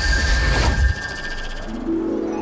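A sparkling, magical transformation sound effect: high steady ringing tones over a low rumble, cutting off about a second in. Soft string music begins just before the end.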